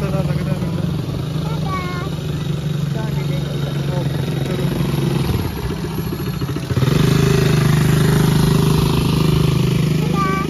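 Small quad bike (ATV) engine running with a steady low hum, getting clearly louder about seven seconds in as the quad comes close.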